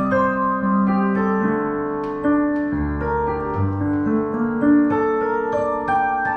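Roland HP205 digital piano played slowly: a melody of long, held notes over sustained chords, with a deep bass note coming in about three seconds in.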